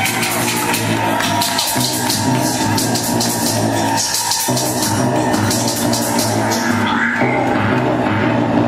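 Drum and bass DJ mix playing loud over a club sound system, with a fast, even hi-hat rhythm over a repeating low bassline; the bass drops out briefly about halfway through.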